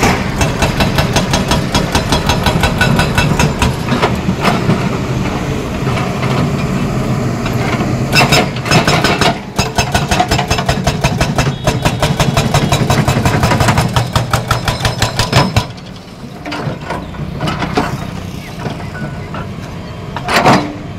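Hydraulic breaker on a Caterpillar 320D excavator hammering concrete in a rapid, steady stream of blows, over the excavator's diesel engine under load. About three-quarters of the way through the hammering stops and the engine goes on running more quietly.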